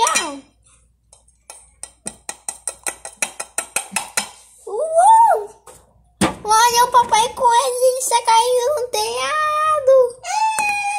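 Rapid light taps, about six a second, for a couple of seconds. Then a child's voice gives a short rising-and-falling cry and, about six seconds in, a long, high, wavering wail.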